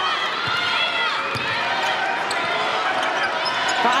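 Basketball dribbled on a hardwood court, making repeated thuds, amid short squeaks of sneakers on the floor and the steady murmur of an arena crowd.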